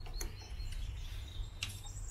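Faint bird calls, a thin high chirp held for over a second, with a couple of light clicks as the coolant cap is handled.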